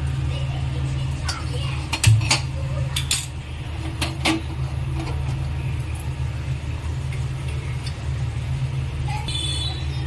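A gas stove being lit: a handful of sharp clicks in the first few seconds, one with a heavier thump about two seconds in, over a steady low hum.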